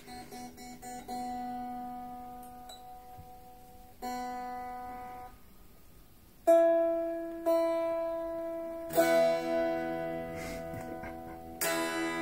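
Stratocaster-style solid-body electric guitar played unplugged, sounding much like an acoustic guitar: a few quick plucked notes, then single notes picked slowly and left to ring out and fade, with a pause of about a second in the middle.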